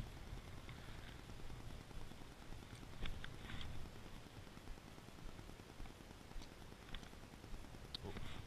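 Faint low rumble with a few soft clicks and taps scattered through, the most distinct about three seconds in: handling noise from a spinning rod and reel held in the hand.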